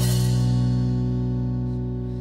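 Live band music: an electric guitar and bass chord held and ringing, slowly fading, with no singing over it.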